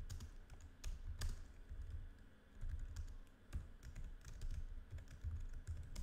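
Typing on a computer keyboard: irregular keystroke clicks with dull low thuds under them.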